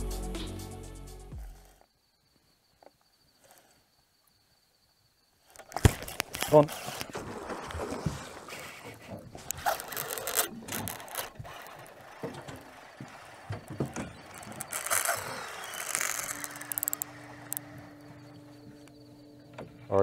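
Background music fades out, and after a few seconds of near silence comes irregular handling noise from a spinning rod and reel on a boat: clicks, knocks and rustling. A steady low hum joins near the end.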